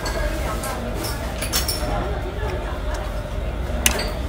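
Restaurant dining-room hubbub: background voices over a low hum, with a few sharp clinks of china tableware, the loudest just before the end.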